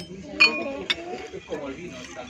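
Tableware clinking: a sharp clink about half a second in, the loudest sound here and ringing briefly, then a second clink half a second later, among quiet voices.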